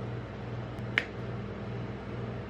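Steady low machine hum from the rolled-ice-cream freezing plate's refrigeration unit, with one sharp click about a second in.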